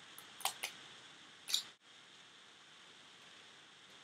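Small plastic clicks from a Revlon Lip Butter lipstick tube and its cap being handled: two quick clicks about half a second in and a slightly longer click a second later, over faint room hiss.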